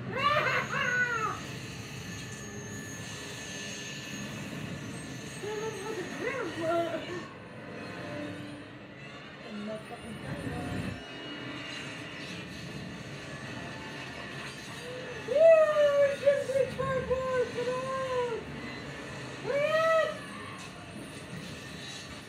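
Several bursts of short, arching, voice-like calls, each rising and falling in pitch, over a steady low background. The loudest run of calls comes about 15 s in, with a shorter one near the end.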